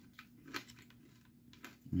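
Faint, scattered clicks of a mouth chewing a sticky, chewy Nerds Rope gummy candy rope, a few soft wet smacks with quiet room tone between them.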